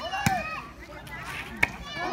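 A volleyball struck by hand twice, two sharp slaps about a second and a half apart, with people's voices around them.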